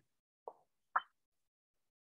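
Gated silence on a video-call line, broken by two short soft blips about half a second apart, the second higher-pitched and sharper.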